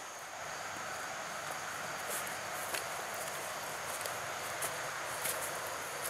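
Steady outdoor creek ambience: an even hiss of flowing stream water, with a few faint ticks.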